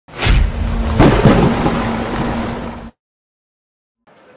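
Loud rumbling intro sound effect with a steady low hum underneath. A heavy hit comes near the start and another about a second in, and the whole sound cuts off suddenly at about three seconds.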